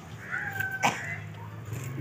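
A single short high-pitched cry, a cat-like call of about half a second that glides up at its onset, with a sharp click near its end, over a steady low hum.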